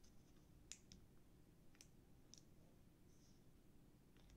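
Near silence, with about four faint clicks from a plastic-wrapped block of mozzarella cheese being handled.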